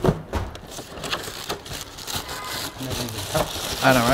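Cardboard shoe box being handled and a plastic bag pulled out of it: scattered crinkling, rustling and light knocks.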